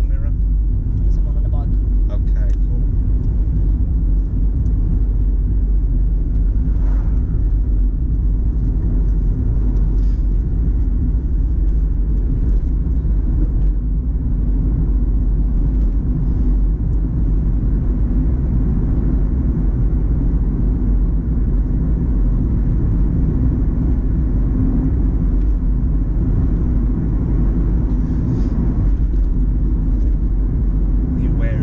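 Low, steady rumble of a car's engine and tyres heard from inside the cabin while driving at an even speed.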